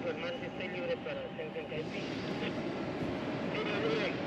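Indistinct voices of people talking over a steady background hiss, the talk coming in the first two seconds and again near the end.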